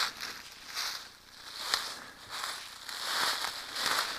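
A hiker's footsteps pushing through dry leaf litter and low brush, the leaves and stems rustling with each stride, at about one step a second.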